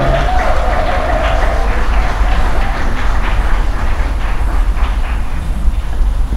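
Outdoor street background noise: a steady, fluctuating low rumble with a hiss over it.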